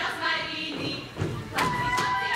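Folk dancers singing a folk song unaccompanied, broken by heavy boot stamps on the stage floor a little over a second in; a voice then holds a high note near the end.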